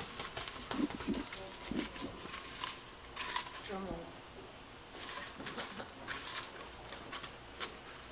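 Paper slips rustling and crackling in irregular short bursts as a hand stirs through them inside a ceramic pot, with faint low voices in the room.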